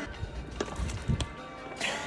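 Someone gulping from a plastic water bottle, heard as a few low thumps and small clicks from swallowing and handling the bottle, with a short breath-like hiss near the end, over background music.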